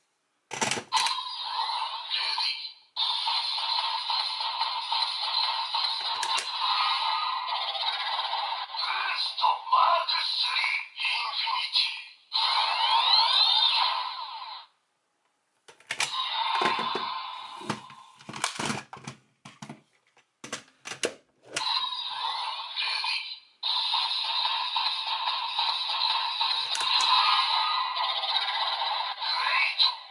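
DX Dooms Geats Raise Buckle toy playing its electronic voice calls, sound effects and music through a small, thin-sounding speaker with no bass. About halfway through it stops for a moment, then comes a run of sharp plastic clicks as the buckle is worked, and the toy's sounds and music start again.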